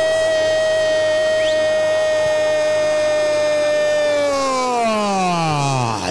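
A radio football commentator's long drawn-out goal cry, "goooool", held on one high pitch for about four seconds and then sliding down in pitch as his breath runs out near the end.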